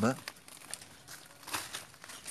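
Quiet crinkling and rustling handling noise as a mango scion is worked down into the split top of a cut rootstock for a cleft graft, with a louder rustle about a second and a half in.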